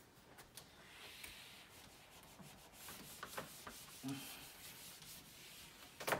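Whiteboard eraser rubbing across a whiteboard, wiping off dry-erase marker writing: a faint, continuous rubbing with a few light knocks.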